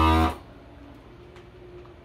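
FoodSaver vacuum sealer's pump buzzing loudly and cutting off sharply a moment in, as it finishes drawing the air out of a food bag. A faint steady hum follows.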